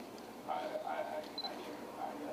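A man's voice speaking low and indistinctly for about a second, starting half a second in.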